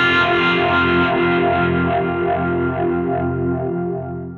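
Overdriven Tokai Les Paul electric guitar, in open tuning and run through an overdrive and a phaser, holding the song's last chord and letting it ring with a steady wavering. The chord slowly fades, dimming toward the end.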